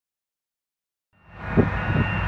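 Silence, then a little over a second in the steady running noise of heavy diesel farm machinery fades in and holds, a low rumble with a faint steady whine above it.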